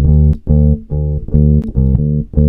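Electric bass guitar played direct into an audio interface: a run of short plucked notes, about two to three a second, each with a sharp attack and a strong low end.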